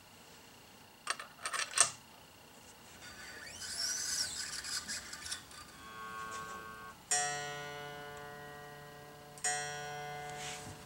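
A few sharp metallic clicks of guitar hardware being handled, then a scraping stretch, then single notes plucked on an unamplified electric guitar's new strings, each ringing and fading: the strongest just after seven seconds in, another about two and a half seconds later, as the strings are brought to pitch against a tuner.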